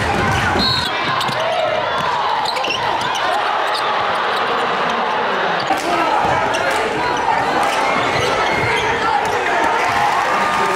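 Basketball being dribbled on a hardwood gym floor during a game, the bounces heard through a steady din of crowd and player voices.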